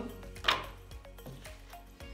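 A clear plastic orchid pot set down on a wooden tabletop: one sharp knock about half a second in, followed by a few faint taps as it is handled. Soft background music plays underneath.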